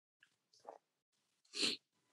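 Near silence, then a short intake of breath by a man about a second and a half in, with a faint mouth click before it.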